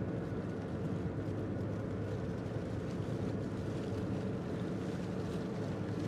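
Steady low rumble with a hiss over it, like road noise heard inside a moving car.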